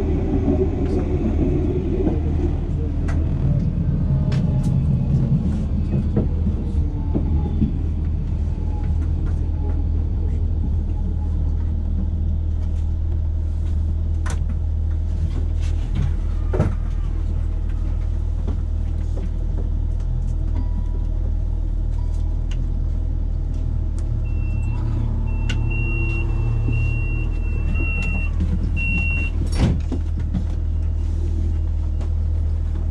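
Electric tram heard from inside, slowing to a halt: the drive's whine falls in pitch over the first several seconds, then the stationary tram gives a steady low hum with occasional clicks. Near the end comes a run of short high beeps about a second apart, and a single sharp knock at the very end.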